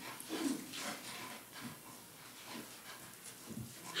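Faint sounds in a quiet meeting hall: brief low murmurs and shuffling while a person walks up to a microphone.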